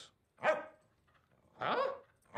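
Small terrier-type dog giving two short barks, about a second apart.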